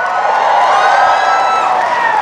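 Large audience cheering and whooping, many voices at once, swelling at the start and easing off near the end.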